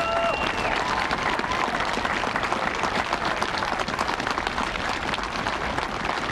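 Audience applauding: a steady round of clapping.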